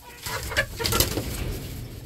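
A turkey hen shifting and scuffling off her straw nest, with rustling and several short scratchy knocks clustered about half a second to a second in.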